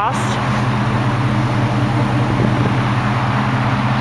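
The 5.3-litre V8 of a 2005 Chevy Silverado 1500 idling steadily, heard close at the tailpipe of its dual exhaust, an even low hum.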